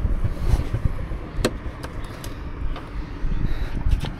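Wind buffeting the microphone: an uneven low rumble that rises and falls in gusts, with a few faint clicks.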